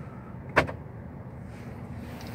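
Ford Everest central door locking actuating once: a single sharp clack about half a second in, over a steady low hum in the cabin.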